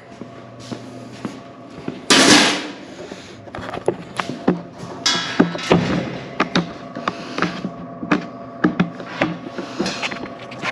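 Hand tools being handled and set down on a stainless-steel counter: scattered knocks, clicks and clanks. A brief loud rushing scrape comes about two seconds in.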